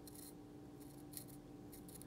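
Faint, short crisp snips and scrapes of an S35VN knife blade shaving hairs off a forearm, a few separate strokes. The edge, dulled by cutting, pops hairs but only scrape-shaves.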